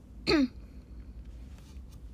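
A woman clears her throat once, a short sound falling in pitch, near the start.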